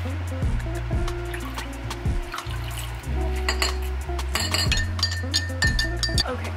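Background music with a steady beat. From about three and a half seconds in, a metal spoon clinks repeatedly against a drinking glass as a drink is stirred.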